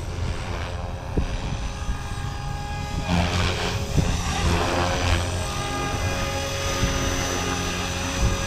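Blade Fusion 360 3S electric RC helicopter coming in low and touching down, its brushless motor and rotor giving a steady whine, with a low wind rumble on the microphone. A rushier burst of rotor noise comes about three to five seconds in, as it nears the ground.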